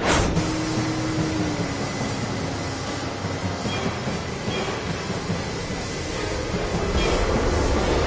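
Steady rumbling vehicle noise, with a low tone that slides slightly down in pitch about a second in.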